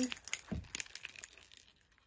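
A plastic photocard holder on a keychain being handled: a run of light clicks and clinks, with a dull bump about half a second in.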